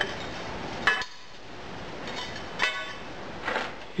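Freshly cast aluminium parts clinking against each other and the steel sand tub as they are handled, in about four separate metallic knocks, some ringing briefly.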